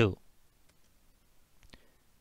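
Near silence after a spoken word, broken by a few faint clicks about a second in and near the end.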